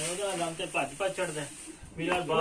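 A man talking, then trailing off into a quieter pause near the end, with a faint steady high hiss behind.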